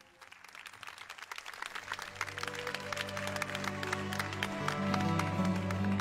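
Audience applause breaking out just after a sung ballad ends and growing louder, while a slow instrumental introduction of sustained low notes comes in about two seconds in and builds.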